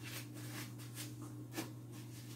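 Faint, soft rustling and handling noises as hands move materials from a plastic tub, over a steady low hum.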